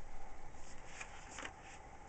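Paperback book being handled, its cover and pages rustling and flicking softly, with a few faint paper ticks about a second in.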